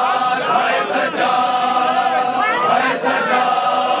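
Many men chanting a mourning lament together in unison, in long held phrases with brief breaks between them.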